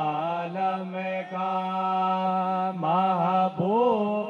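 A man sings a devotional song (naat) through a microphone with no instruments. He holds one long steady note, then slides up and down through ornamented phrases near the end.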